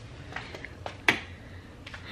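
A few small clicks over a low steady hum, with one sharper click about a second in.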